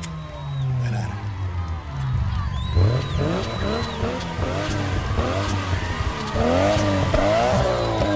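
Several tuned sports-car engines revving while standing still, in repeated blips whose pitch sweeps up and down and overlaps. They grow busier and louder after about three seconds.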